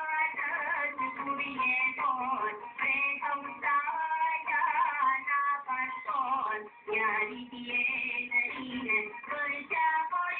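High voices singing a song without pause, the sound muffled, with no treble.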